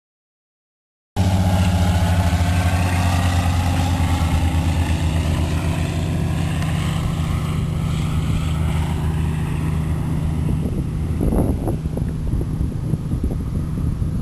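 Airplane flying low past, starting abruptly about a second in: a loud, steady engine drone with a whine that slides in pitch over the first few seconds, slowly fading. A few gusts of wind on the microphone near the end.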